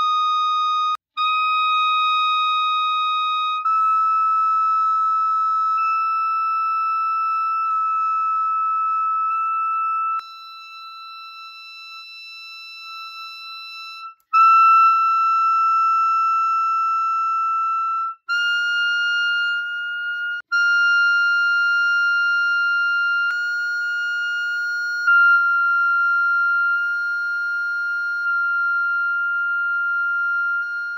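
Clarinet holding long, steady notes high in its altissimo register, stepping up in pitch through the altissimo F, F-sharp and G fingerings. Each note lasts several seconds, with brief breaks between them. The playing is softer for a few seconds about a third of the way in.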